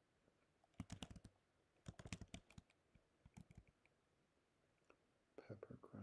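Quiet keystrokes on a computer keyboard, typing letters in three short bursts of taps about a second apart.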